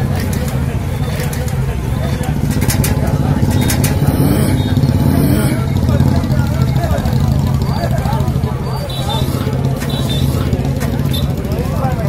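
A motor vehicle engine running with a steady low drone, under indistinct voices of people talking.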